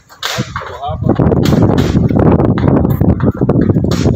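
Large plastic tarpaulin sheet crackling and flapping as it is pulled and fixed against a wall. It is loud and continuous from about a second in, with sharp snaps.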